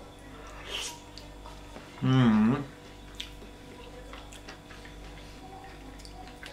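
A man's closed-mouth "mmm" while tasting a spoonful of beetroot salad: one short hum about two seconds in, its pitch dipping and then rising again. Faint clicks from the mouth and spoon are heard around it.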